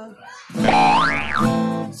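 Acoustic guitar strummed on the closing A minor chord of a stanza, with a bright tone that sweeps up and back down over the ringing chord.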